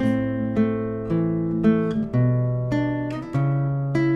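Nylon-string classical guitar fingerpicked: a slow arpeggiated passage of single notes over thumb-plucked bass notes, a new note about every half second, each left to ring into the next.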